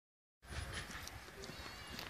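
Faint footsteps of a person and dogs walking on concrete: irregular soft taps and scuffs.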